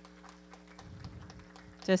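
Quiet room tone with a steady hum and a few faint clicks; a woman's voice starts speaking near the end.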